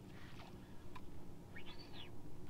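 A faint bird call near the end: one short note that rises and falls in pitch, over a low steady outdoor rumble with a faint click about a second in.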